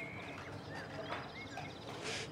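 Quiet outdoor ambience of small birds chirping, short rising and falling calls with a faint trill behind them, and a few faint knocks.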